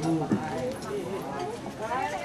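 Indistinct voices of people talking nearby, with a few light knocks.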